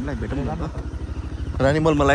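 People's voices talking, louder near the end. Under them runs a steady low throb with about twenty pulses a second, like a small engine running.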